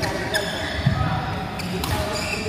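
Badminton racket strikes on a shuttlecock during a rally: two sharp hits about a second and a half apart, with a low thud of footfalls on the court mat between them, echoing in a large hall.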